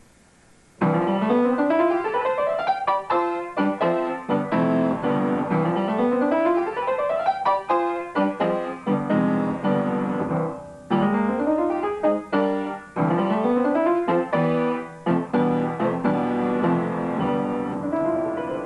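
Upright piano being played: a piece starts about a second in, built of quick rising runs of notes that repeat phrase after phrase, with brief pauses between phrases.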